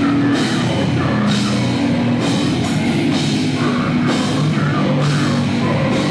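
Death metal band playing live at full volume: electric guitar and bass over a drum kit with constant cymbals.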